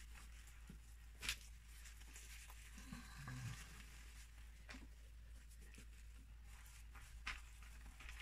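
Very quiet handling of resin-soaked fabric with rubber-gloved hands, with three soft ticks a few seconds apart.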